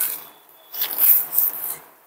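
Plastic packaging crinkling and rustling as a clear bag of plastic beads is pulled out of a plastic courier mailer: a short burst at the start, then a longer stretch of rustling that dies away just before the end.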